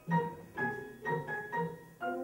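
Grand piano playing a run of short struck chords, about two a second, each fading quickly before the next.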